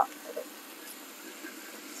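Faint, steady sizzle of chicken strips frying in a small pan on a hot electric hotplate.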